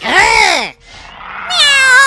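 High-pitched cartoon Minion vocalizations: a short call that rises and falls in pitch, like a questioning 'ooh?', sounding almost like a meow, then after a brief pause a second call, rising and then held, about a second and a half in.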